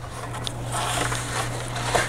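Sheets of heavy deckle-edged paper rustling and sliding as they are handled and pushed onto the journal's strings.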